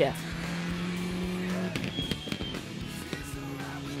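A Citroën DS3 R3 rally car running at speed on a stage, under a music bed of held notes that change about a second and a half in.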